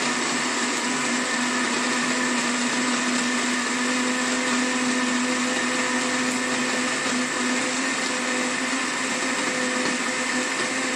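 Countertop jug blender running at a steady speed, blending soaked cashew nuts and water into smooth nut milk: an even motor whir with a steady hum.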